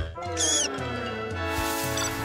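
Background music with held chords and a low bass. About half a second in comes one brief high-pitched squeaky cartoon voice.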